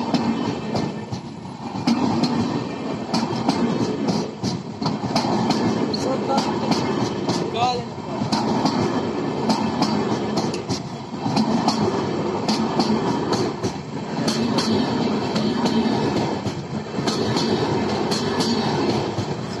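Pawan Express passenger coaches rolling past close by, with steel wheels clattering over the rail joints in sharp clicks throughout and the noise swelling and dipping every few seconds.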